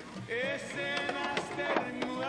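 Background music: an ornamented melody that wavers in pitch, over repeated drum strikes.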